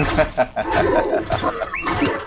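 A man laughing heartily, a quick run of repeated 'ha' pulses for about the first second, over a film trailer's soundtrack.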